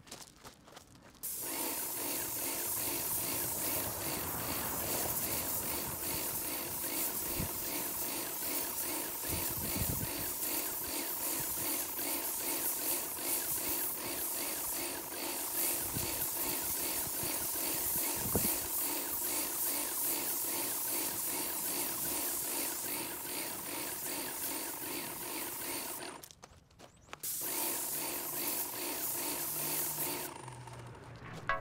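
Airless paint sprayer spraying primer: a steady hiss with an even, rapid pulsing from the pump. It cuts out briefly near the end and then resumes.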